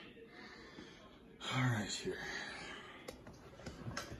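A man's single short spoken word over quiet room tone, with a faint click a little after the word.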